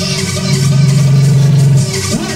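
Electronic dance music with a loud, held low bass note that comes in about half a second in and cuts off abruptly just before the end.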